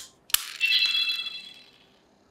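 Henshin Sky Mirage transformation toy wand: a sharp plastic click as the Skytone is set into it, then a bright, shimmering electronic chime from the toy's small speaker that fades out over about a second.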